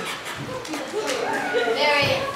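Children speaking, indistinct, their voices carrying in a large room.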